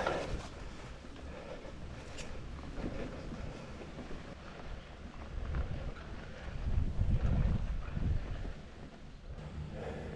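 Hardtail mountain bike on Maxxis tubeless tyres rolling along a dirt trail: a steady low rumble of tyres on the ground, swelling louder about seven seconds in, with a single sharp click near the start.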